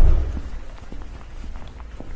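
A low thump right at the start, then a fading low rumble with scattered faint knocks: handling noise from a handheld camera being carried around a car.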